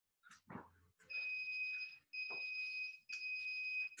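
Electronic interval timer beeping: three evenly spaced steady beeps of just under a second each, with a fourth starting at the very end. It is the countdown that marks the end of a work interval. A soft thump comes about half a second in.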